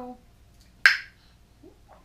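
Vacuum-sealed metal lid of a glass baby food jar popping once as it is twisted open, a single sharp pop just under a second in: the seal breaking.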